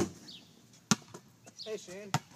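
A basketball hits the backboard and rim with a sharp bang, then about a second later a single sharp bounce lands on the asphalt driveway.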